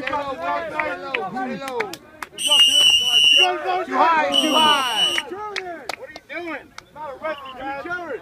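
Players shouting and cheering on a one-on-one football circle drill, with two short, shrill whistle blasts about two and a half and four and a half seconds in.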